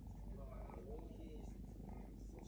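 Young tabby cat purring steadily while being stroked, a rapid low continuous rumble close to the microphone.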